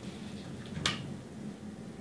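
Steady low hum of an automatic egg incubator's circulation fans running. A short soft hiss comes a little under a second in.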